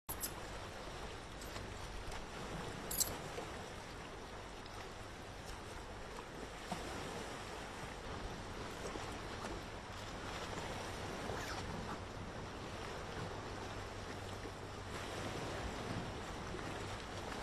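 Steady outdoor background noise, an even rush with a low hum under it, broken by a few faint clicks, the sharpest about three seconds in.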